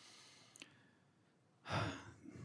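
A man's breathing into a microphone during a pause in speech: a faint breath out, a small mouth click about half a second in, then a louder breath near the end.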